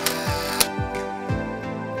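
Background music with a steady beat, and a short noisy swish at the start lasting about half a second, set off by a click at each end.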